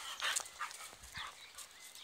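A pit bull-type dog jumping up and dropping back onto dirt ground, with short scuffling sounds and a faint high whine near the end.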